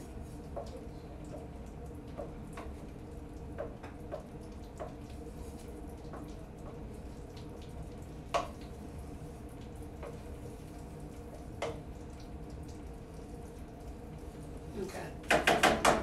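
Butter melting and sizzling in a skillet over a gas burner, with a steady hiss and scattered small pops, one louder pop about eight seconds in. This is the butter being melted to start a roux for gravy.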